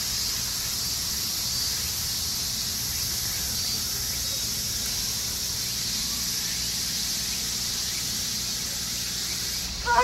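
Steady, unbroken high-pitched drone of an outdoor insect chorus in summer trees, with a low outdoor rumble underneath; it drops away suddenly near the end.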